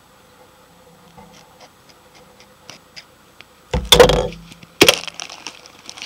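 A few light clicks, then about three and a half seconds in a loud burst of plastic crackling and crinkling, with a sharp crack a second later: a plastic Easter egg and the cellophane candy bags inside it being handled.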